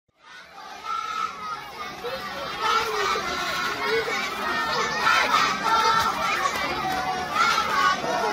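A group of children's voices chattering and calling out over one another, fading in over the first second.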